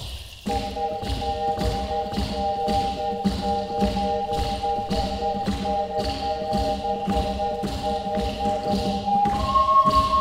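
Ocarina ensemble holding a sustained three-note chord, entering about half a second in, over an acoustic guitar strummed in a steady percussive rhythm of about three strokes a second. Near the end the top ocarina line steps up into a higher melody.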